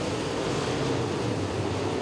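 Dirt-track open-wheel modified race cars running laps, heard as a steady, even wash of engine noise with no single car standing out.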